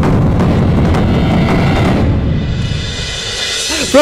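Dramatic background score with heavy, deep drums. About two seconds in it thins out into a rising swell.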